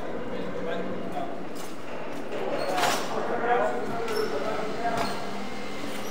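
Indistinct voices of people talking at a distance, loudest about three seconds in, over a steady low hum.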